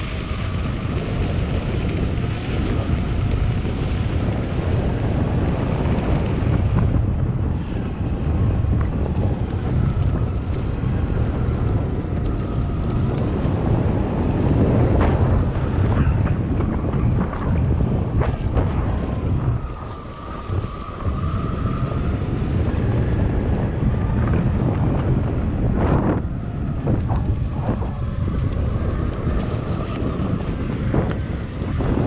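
Ride on an electric mountainboard over a gravel and dirt forest trail: wind buffeting the microphone over a continuous rumble of the wheels, with a faint whine that rises and falls with speed. The noise eases briefly about two-thirds of the way through, and a few knocks from the rougher ground come near the end.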